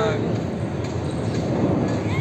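A train running on the railway line, a steady noise with no clear rhythm.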